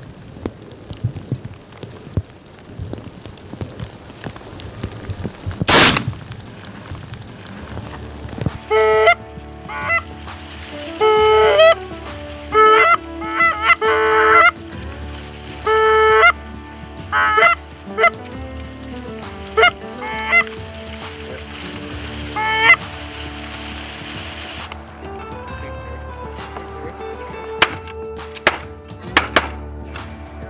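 Geese honking: a run of loud, short repeated honks begins about nine seconds in and goes on, with a few more near the end. It comes after a single loud thump about six seconds in.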